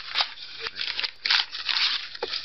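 Paperback book pages rustling as they are leafed through quickly, a run of short papery swishes one after another.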